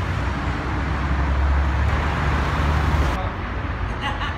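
Street traffic: a car's engine running close by, a steady low hum under road noise, growing louder until about three seconds in, when the sound cuts abruptly to quieter street ambience.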